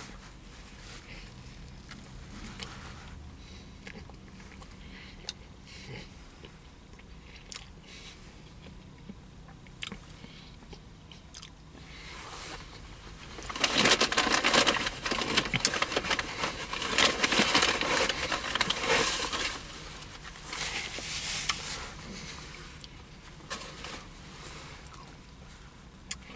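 A man chewing a brisket sandwich close to the microphone, with small mouth clicks at first. About 13 seconds in he takes a bite, and some six seconds of louder chewing follow before it quietens again.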